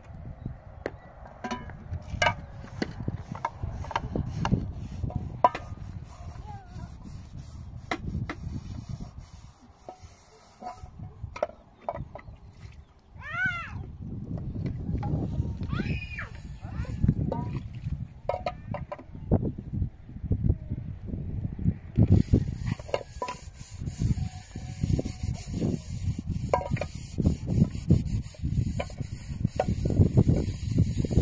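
Gusty wind buffeting the microphone, with scattered clicks and knocks. About thirteen seconds in comes a short call with wavering, rising pitch. From past twenty seconds a steady hiss joins the wind.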